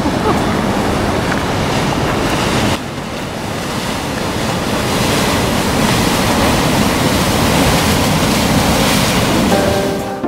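Ocean surf breaking on shoreline rocks, with wind buffeting the microphone; the sound drops abruptly about three seconds in, then builds again.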